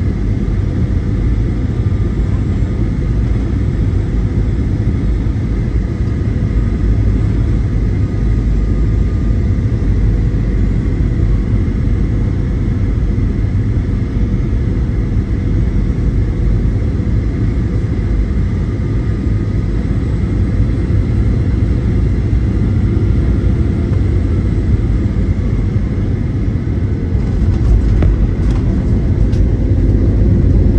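Steady low rumble of engine and airflow inside an airliner cabin on final approach. Near the end the wheels touch down with a few knocks and the noise grows louder on the runway.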